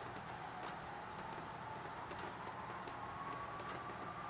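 Faint whistle of natural gas flowing through a barely opened shut-off valve and hose into a generator's carburetor, slowly rising in pitch, with a faint low hum beneath. It is the sign that gas is coming in at a small setting before a start attempt.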